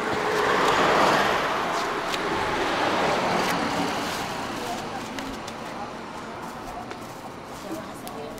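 A vehicle passing on the highway, its road noise swelling in the first second and then fading away slowly over the following seconds.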